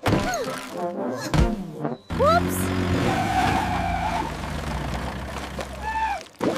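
Cartoon soundtrack: a character's short gasping vocal sounds, then a sudden break about two seconds in, followed by a steady low rumble under music, with rising sliding sound effects.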